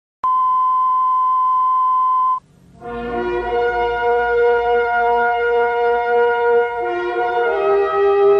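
Channel intro sound: a steady beep for about two seconds that cuts off, then intro music of long held chords that shift twice near the end.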